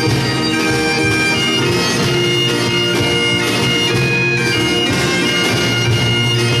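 Bagpipes playing a folk melody over their steady drones, with a drum, bodhrán and acoustic guitar accompanying.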